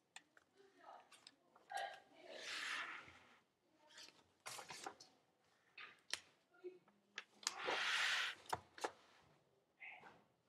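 Sketchbook pages being handled and turned: two swishes of rustling paper, about two and a half and eight seconds in, among scattered light clicks and taps.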